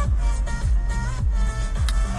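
Electronic dance music with a steady kick-drum beat playing loudly from a car radio inside the cabin.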